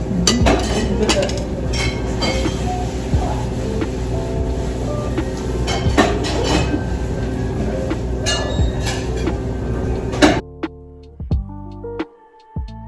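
Restaurant ambience: cutlery clinking on plates and dishes over a steady background hum. About ten seconds in it cuts suddenly to background music of plucked notes.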